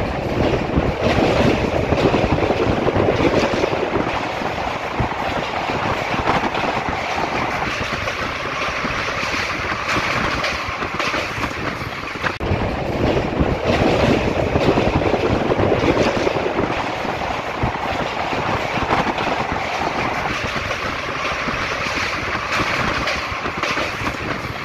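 Passenger train running at speed, heard from on board: the steady noise of wheels on the rails, with continuous clatter over the track.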